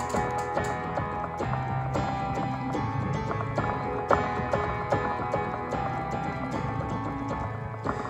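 Guitar strummed in a steady rhythm, playing a pop song's instrumental intro.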